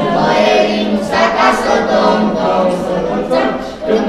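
A group of young carolers singing a Romanian Christmas carol (colind) together, unaccompanied, with a brief break between phrases near the end.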